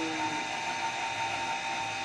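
Machinery running steadily: a low hum with a steady high-pitched whine over it and no strokes or changes.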